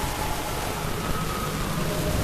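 Steady hiss and low rumble of room and recording noise in a hall, with nothing standing out.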